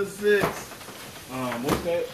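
People's voices in a small room, in two short bursts, with a short knock about half a second in.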